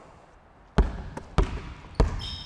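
A basketball bouncing a few times on a hardwood gym floor, with sharp, echoing thumps about half a second apart.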